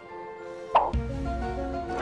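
A short cartoon-style 'plop' sound effect about three quarters of a second in, followed by background music with a low held bass note and a simple melody.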